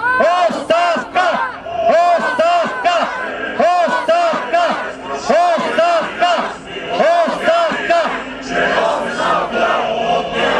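A group of protesters shouting a slogan together over and over in a steady rhythm, about one to two shouts a second, with a man's voice on a microphone leading them.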